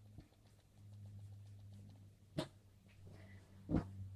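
Quiet room with a faint steady low hum and a single sharp click about two and a half seconds in, with a softer knock near the end.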